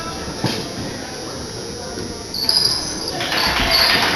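Murmur of a crowd in a gymnasium, with a faint knock early on and a few short, high squeaks a little past halfway, typical of sneakers on a hardwood court.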